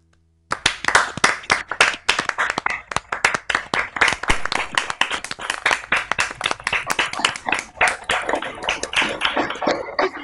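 Applause: hands clapping quickly and steadily, starting suddenly about half a second in.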